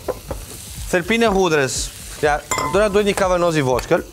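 Food sizzling in a frying pan as it is stirred, with small clicks of the utensil against the pan. A man's voice speaks loudly over it in short stretches.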